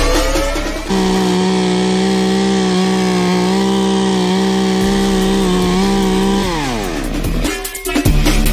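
Chainsaw held at high revs for several seconds, then the pitch falls steeply as the throttle is let off near the end. Music plays for about the first second.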